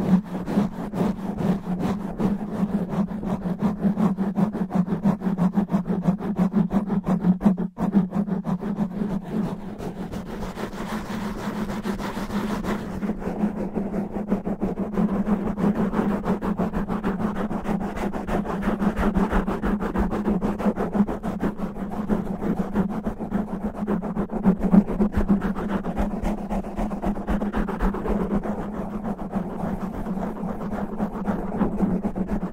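Fingernails scratching fast and roughly over a foam microphone windscreen: a dense, continuous scratching close on the mic, with a brief break about eight seconds in and a duller sound from about halfway through.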